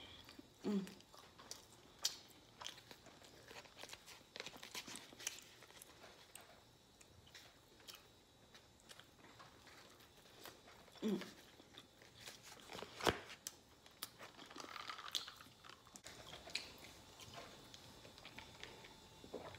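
Faint close-up mouth sounds of a person eating: scattered wet chewing and biting clicks, with the paper wrapper round the food crinkling. A short hummed "mm" of approval comes about a second in and again about eleven seconds in.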